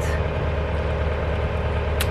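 Motorboat engine running steadily while the boat is under way, heard from inside the cabin as a constant low hum with a steady higher drone above it.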